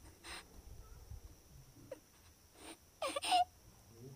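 A person's short, breathy gasps and whimpers, a few soft ones followed by two louder ones close together about three seconds in.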